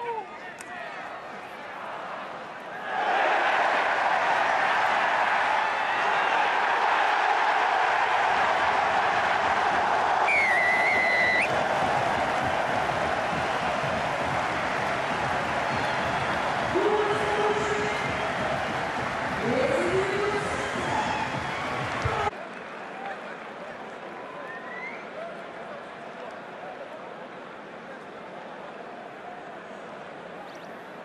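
Large stadium crowd cheering and applauding a rugby try. The roar swells suddenly about three seconds in, with a short whistle partway through and a few shouts in it, then cuts off abruptly with about eight seconds left, leaving quieter crowd ambience.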